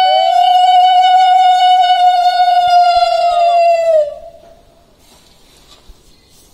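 Conch shell (shankha) blown as a long, steady held note. A second, slightly lower note overlaps it for most of its length, and the sound stops about four seconds in with a short falling tail.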